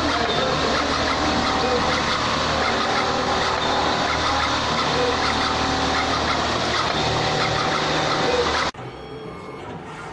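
Automatic heavy-duty cable cutting and stripping machine running, its feed rollers and blades making a dense, busy mechanical noise. The noise cuts off abruptly about nine seconds in, and a quieter machine running sound follows.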